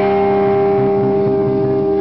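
Live blues-rock band holding one chord, electric guitars ringing at a steady pitch over a low rumbling drum roll: the closing chord of the song.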